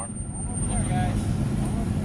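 Dodge Ram pickup truck engines running steadily at low speed, a low rumble, as the trucks crawl slowly in a circle.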